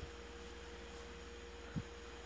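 Low steady electrical hum with a faint steady higher tone above it, and one soft low thump near the end.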